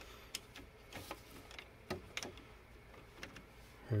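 Faint, irregular clicks and ticks of a screwdriver and the metal belt-clamp plate being worked on a 3D printer's X carriage as its screws are tightened.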